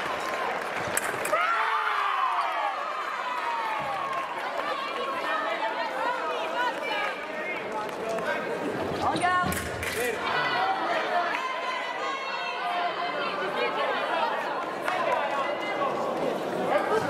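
A long falling shout about a second and a half in, just after a sabre touch, then overlapping chatter of voices in a large hall. A couple of sharp clacks come about nine seconds in.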